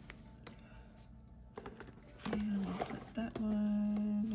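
Soft paper handling with a few light clicks, then about two seconds in a woman's voice sounding wordless held notes, the second one long and steady, much louder than the paper.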